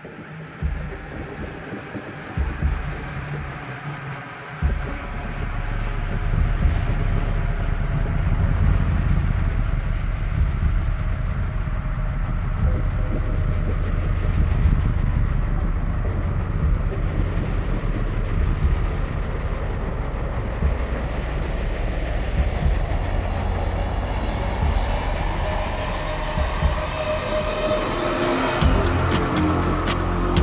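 Downtempo psychill electronic music as a track opens: sparse at first, then a deep, steady repeating bass pulse comes in about five seconds in under layered synth textures, with a rising synth sweep building near the end.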